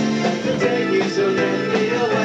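Live rock band music: electric guitar and a drum kit playing with a steady beat.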